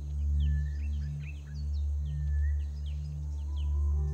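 Low, sustained background-music drone that swells and fades, with many short bird chirps above it.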